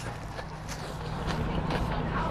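Close-up chewing of a lettuce-wrapped burger, with a few faint mouth clicks, over a low steady rumble in a car cabin.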